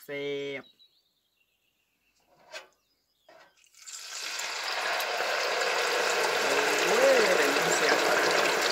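Pieces of pike lowered in the wire basket into an electric deep fryer's hot oil: about four seconds in the oil starts sizzling and bubbling hard, building up and then holding steady.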